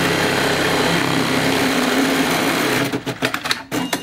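Computer-controlled pattern sewing machine stitching leather held in a moving clamp frame, running fast and steadily. It stops about three seconds in, followed by a few clicks and a short high beep near the end.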